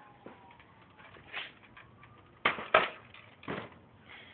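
A few short knocks and clacks, four in all, the loudest two close together a little past the middle, as of hard plastic or tools being handled against the truck's front end.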